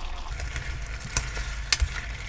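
Chicken feet cooking in a thick red chili sauce in a pan, sizzling as the sauce reduces, while a metal spoon stirs them. A couple of sharp clinks of the spoon against the pan come about a second in and again near the end.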